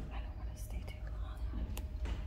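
A person whispering faintly over the low rumble of a handheld camera on the move, with a few light clicks.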